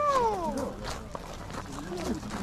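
A single animal call at the start, rising and then falling in pitch, lasting under a second.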